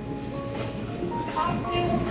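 Background music with held melodic notes, over a steady low rumble.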